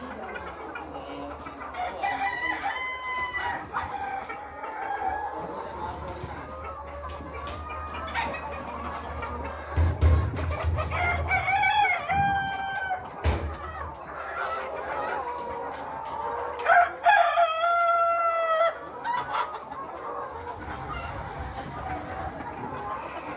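A large flock of Lohmann Brown laying hens clucking steadily, with three long crowing calls rising above it: about two seconds in, near the middle, and about two-thirds of the way through.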